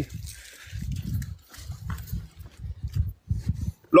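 Irregular low rumbling thumps on a phone's microphone, about two a second.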